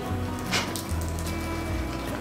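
Background music with a steady, repeating bass line, and one short sharp sound about half a second in.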